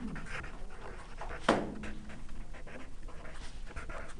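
Felt-tip marker scratching across paper in quick short strokes as words are handwritten. About a second and a half in there is one brief louder sound with a low steady tone.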